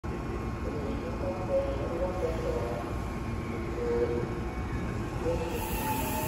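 Steady low rumble and hum of a Meitetsu 3150 series electric multiple unit standing at a station platform, its onboard equipment running while it waits to depart.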